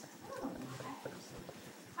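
A lull in a classroom, with faint, broken-up voices murmuring in the background.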